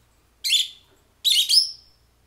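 Rosy-faced lovebirds calling: two shrill chirps about a second apart, the second one longer.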